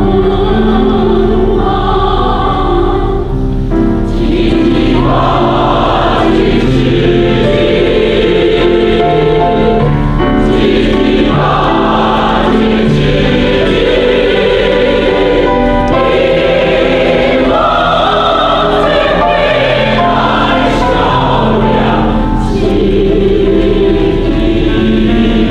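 A large mixed choir of men's and women's voices singing in parts, holding long sustained chords that change every second or two.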